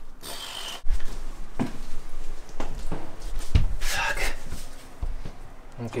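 A heavy lithium battery pack being handled and set down on a van floor: scattered knocks and rubbing, with the heaviest thump about three and a half seconds in, and a man breathing hard from the effort.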